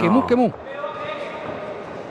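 Background sound of a boxing arena during a bout: a steady low murmur with a faint long held call in the background, following a commentator's last word.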